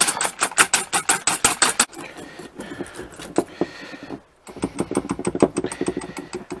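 Balloon wire whisk beating egg whites and sugar by hand in a stainless steel bowl: fast, rhythmic clinking of the wires against the metal, several strokes a second, softer in the middle. It breaks off for a moment about four seconds in, then resumes in the now stiff meringue.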